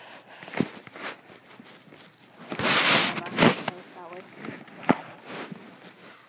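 Plastic bag crinkling and rustling as a pair of receiver gloves is worked out of it. There are a few sharp crackles in the first second, then a louder stretch of rustling about halfway through.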